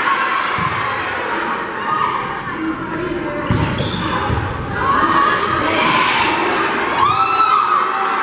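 Indoor volleyball rally: hits on the ball and short squeaks of court shoes on the gym floor, over players and spectators calling out in the echoing hall.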